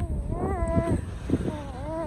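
A small child's voice making two drawn-out, wavering vocal sounds, one about half a second in and another near the end, over low wind rumble on the microphone.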